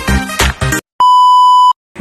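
The tail of an electronic intro music track with a beat, cut off abruptly, then a single steady high-pitched electronic beep lasting under a second.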